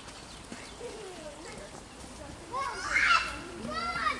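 Background voices of people outdoors, faint at first, with a child's loud, high-pitched call about three seconds in.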